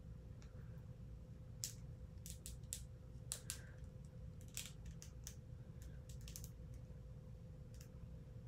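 Small plastic action figure and its detachable toy accordion being handled and fitted together: faint, irregular light clicks and taps of plastic parts.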